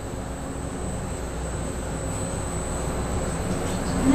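Steady mechanical room noise: a low rumble with a thin, high, steady whine over it.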